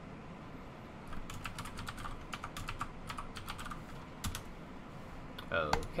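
Typing on a computer keyboard: a quick run of keystrokes lasting about three seconds, followed near the end by a brief bit of a man's voice.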